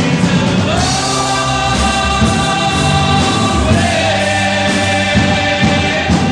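Live rock-opera music: a chorus of voices holds long notes over the band's accompaniment. The pitch slides up about a second in and again near the four-second mark.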